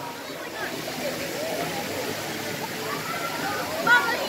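Many people's voices chattering at once around a busy swimming pool, over a steady rush and slosh of water. One voice rises louder just before the end.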